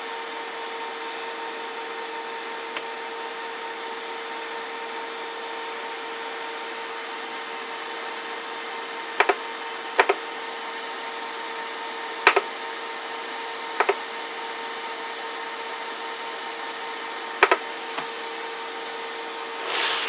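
Galaxy 98VHP CB radio's receiver playing a steady tone over hiss during a receive sensitivity check. Sharp clicks, several in quick pairs, come in the second half as buttons and knobs on the test gear are worked.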